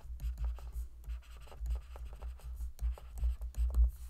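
Stylus writing on a tablet screen: a quiet string of quick taps and scratches as a few words are handwritten.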